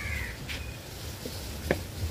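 A crow gives a short caw at the start, and a couple of soft plops follow as dough balls are dropped into a pan of boiling water.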